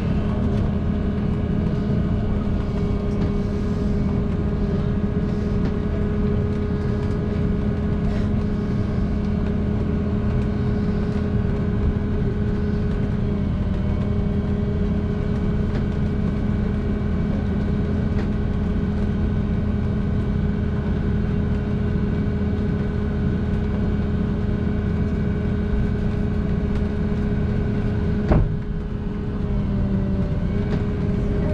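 Steady hum inside the cabin of a large passenger vehicle moving slowly in traffic, with a few constant tones running through it. A single sharp knock comes near the end.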